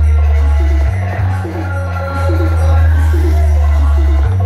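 DJ music played at high volume through a high-power loudspeaker sound system, dominated by a deep, heavy bass that drops out briefly about a second in, with a vocal line riding over it.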